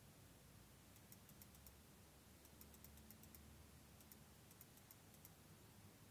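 Near silence, with three short runs of faint, quick clicks from a computer mouse scroll wheel being turned, over a faint low hum.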